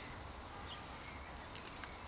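Faint high-pitched hiss from a squeezed plastic oil bottle dispensing a drop of oil into the pawl hole of a bicycle freehub, stopping a little over a second in, followed by a few faint light ticks.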